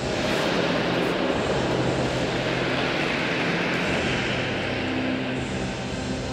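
A loud, steady rushing noise that comes in suddenly and swells in the middle, laid over faint music that keeps playing underneath.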